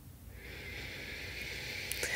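A woman's slow, audible breath, a soft rush of air that starts about half a second in and lasts over two seconds, taken as part of a guided meditation breathing exercise.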